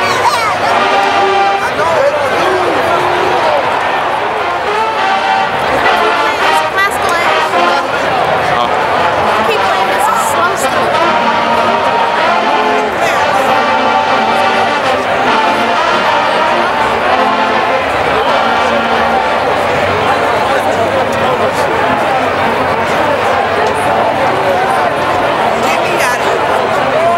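A large marching band's brass section (trumpets, trombones and sousaphones) playing loudly, with crowd voices mixed in.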